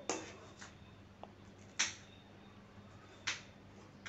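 A metal ladle knocking against the side of a steel kadai as a simmering curry is stirred: a few short, sharp clicks, the loudest just under two seconds in and another a little past three seconds, over a quiet background.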